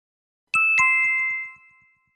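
Two-note chime logo sting: a high ding and then a lower one about a quarter second later, both ringing on and fading out within about a second.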